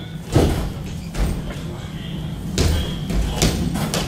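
Kung fu footwork on a sports-hall floor: about five separate thuds of feet stamping and stepping as the practitioner drives through fast hand strikes.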